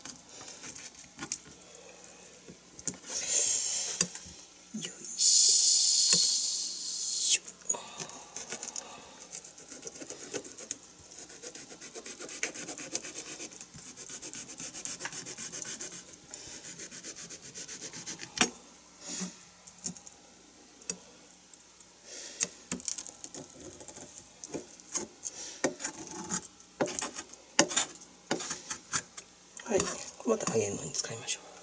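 Kitchen knife sawing and scraping through a cutlassfish along its bones on a plastic cutting board, with frequent small taps and clicks of the blade. The scraping is loudest and hissiest a few seconds in, then continues more quietly.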